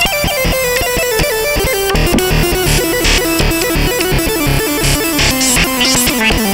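Novation Peak synthesizer playing an improvised piece: a melody that steps gradually downward over a fast run of short repeated notes.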